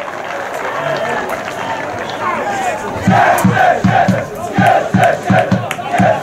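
Football crowd shouting and cheering a home goal, turning about halfway through into a rhythmic chant of about three shouts a second.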